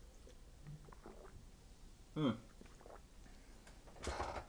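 Faint sips and swallows from a paper cup of drink, a few small wet noises over quiet room tone.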